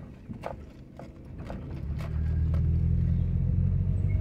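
A few light clicks and knocks, then from about halfway a steady low rumble of a car driving slowly, heard from inside the cabin, growing louder.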